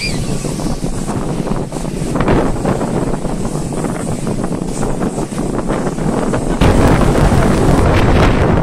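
Twin-engine business jet with rear-mounted engines running loud at the start of its takeoff, rising sharply about six and a half seconds in as it goes to takeoff power. The jet blast hits the microphone as a heavy wind rumble.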